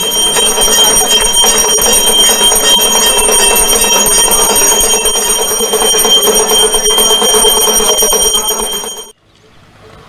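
Temple bells ringing rapidly and continuously during aarti, with several high bright tones over a dense clanging. The ringing stops abruptly about nine seconds in.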